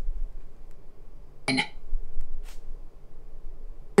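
Audiobook narration through the backpack's Bluetooth speakers dropping out: a low hum with only one short clipped scrap of the narrator's voice about one and a half seconds in. The audio skips, as if the Bluetooth connection can't be maintained.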